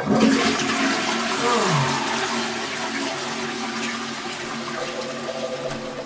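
A toilet flushing: a sudden rush of water that starts at once, with a falling gurgle about a second and a half in, then slowly dies away.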